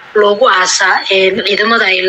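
Speech only: a person talking without a break.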